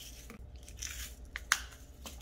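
A small multi-compartment plastic case of rhinestones being picked up and handled: light rustling and clicking of plastic, with one sharp click about a second and a half in.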